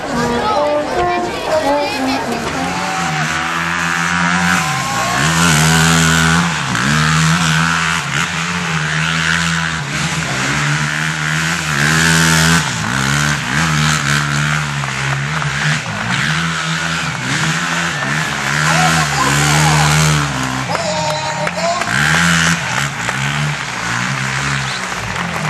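A sport quad bike's engine revving up and down again and again as the ATV spins and throws up sand, the revs rising and falling every second or two from a couple of seconds in.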